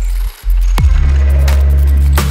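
Glitchy electronic IDM track with heavy sub-bass; the sound cuts out briefly near the start, then a kick drum with a falling tail brings in a pulsing bass line.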